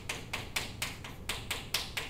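Chalk tapping and scratching on a chalkboard while writing: a quick, uneven run of about ten sharp taps, roughly five a second.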